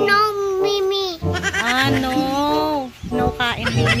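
A young child's voice making two long, drawn-out, wavering sounds, the second lasting about two seconds, then shorter voice sounds near the end.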